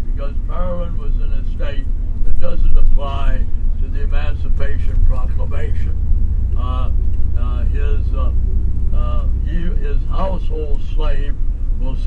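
Speech over the steady low rumble of a vehicle running.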